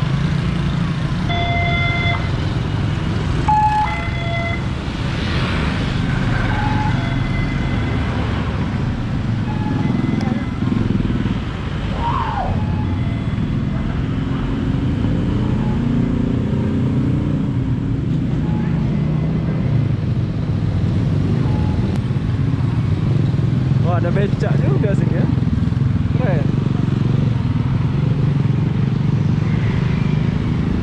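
Steady low rumble of travelling through town traffic on a road vehicle, engine and wind on the microphone, with other motorcycles passing. There are a few short tones in the first few seconds and a voice briefly about three-quarters of the way through.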